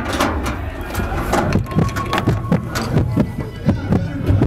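Haunted-attraction sound effects in the dark: a steady low rumble with many irregular knocks and thumps over it.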